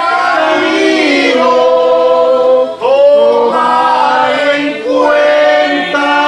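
A congregation singing a Spanish-language praise hymn together in long held notes, with a short break between phrases about three seconds in.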